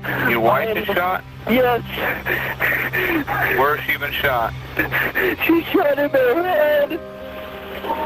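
Recorded 911 emergency call: a dispatcher and a caller talking back and forth over a telephone line, their voices thin and cut off in the highs, with a low, steady music bed underneath.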